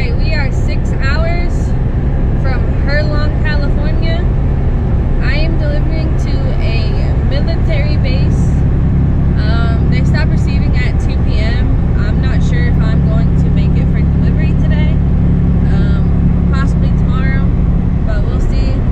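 Loud, steady low drone of a Peterbilt 379 semi truck's engine and road noise, heard inside the cab while cruising at highway speed. A voice-like sound comes and goes over it.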